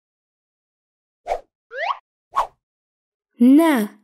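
Cartoon sound effects: a short pop, a quick rising whistle-like glide, then another pop. Near the end a voice starts reading out a letter.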